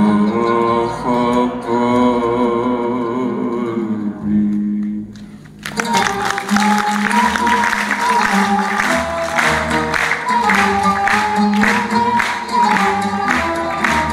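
Arabic song with orchestra: a male singer holds a long, wavering vocal line for about five seconds. After a brief dip, the orchestra comes in at full strength with melodic lines over a steady percussion beat.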